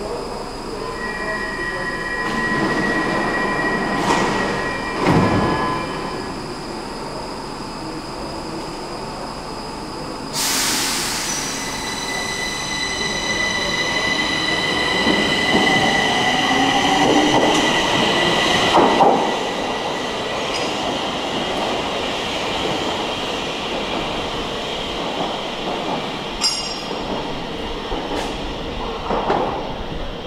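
Stockholm metro train pulling out of an underground station: a sudden hiss about ten seconds in, then a whine of several high tones with lower tones climbing in pitch as it accelerates away, along with wheel squeal.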